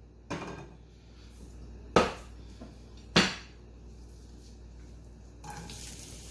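Three sharp knocks and clinks of cookware around a skillet on a gas stove, then near the end diced onion tipped into the hot skillet and starting to sizzle.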